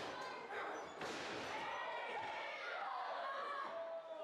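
A wrestler's body hitting the wrestling ring's canvas mat with a thud about a second in, amid shouting voices from the crowd.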